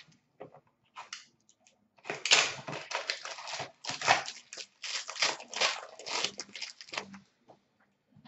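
Wrapper being torn and crinkled off a pack of hockey trading cards, an irregular crackling that runs from about two seconds in until near the end, after a few faint clicks.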